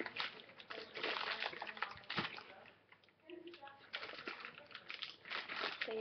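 Crinkly plastic toy packaging rustling and crackling irregularly as hands try to tear it open. The sealed bag won't give by hand.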